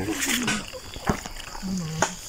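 Two short falling vocal notes, one right at the start and a low one near the end, with a faint hiss and a single sharp click about a second in.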